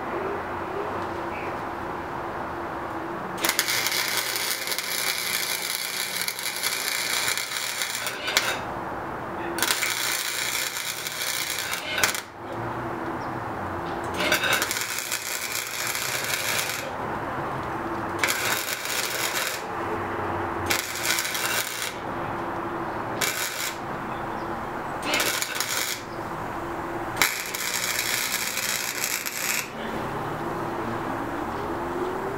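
Electric arc welding on steel frame tubing: a run of about eight crackling welds of varying length, the longest about four seconds, with short pauses between. A steady low hum runs underneath.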